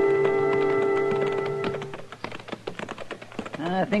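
A held music chord ends about two seconds in, while the steady clip-clop of horses walking, a radio sound effect, runs underneath and carries on alone. Speech begins at the very end.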